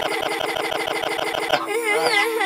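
A cartoon girl's laughter run through a heavy sound effect: her voice warbles up and down and is chopped into a fast stutter of about a dozen pulses a second.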